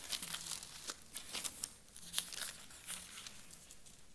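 Thin Bible pages being turned by hand: irregular soft paper rustles and flicks as two people leaf through to a passage.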